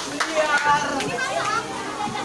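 Several young people's voices talking and calling out over each other in lively chatter, with a couple of brief clicks.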